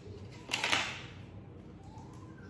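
A brief rustle and crackle of toothbrush packaging being handled and set down, about half a second in.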